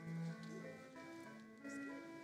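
Church organ playing softly in slow, sustained chords, with a low held note sounding in the first moment.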